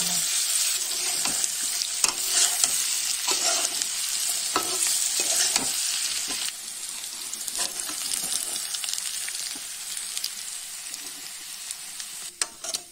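Chicken frying and sizzling in a hot wok with sauce, stirred with a metal utensil that scrapes and clicks against the pan. The sizzle drops to a lower level about halfway through.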